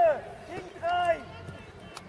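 Shouting voices on an outdoor football pitch. A drawn-out call fades just after the start, then a second short shout comes about a second in, falling in pitch at its end.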